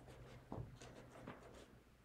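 Near silence: room tone with a faint low hum, a soft thump about half a second in and a few faint clicks.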